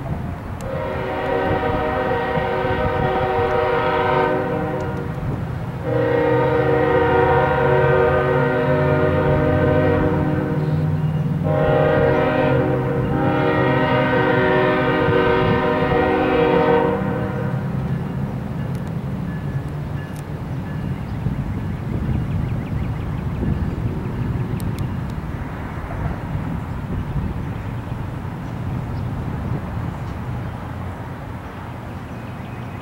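Diesel freight locomotive's multi-chime air horn sounding the grade-crossing signal: two long blasts, one short and a final long blast, over the low rumble of the locomotives' diesel engines. After the horn stops, the steady engine rumble carries on as the locomotives pass.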